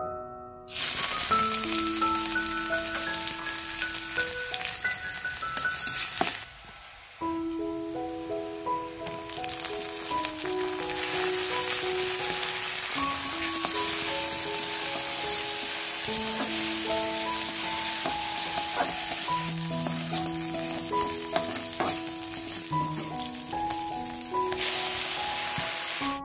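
Food sizzling as it fries in hot oil in a metal kadai, stirred with a spatula, under soft piano background music. The sizzle starts about a second in, drops out briefly around six seconds in, then runs on.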